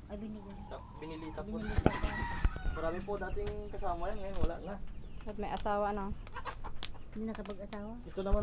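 Chickens in a pen: a rooster crows once, about two seconds in, while the birds keep up repeated clucking and calling throughout. A few sharp clicks are heard over them.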